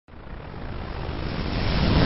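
A swelling whoosh sound effect: a rushing noise with a deep rumble that grows steadily louder.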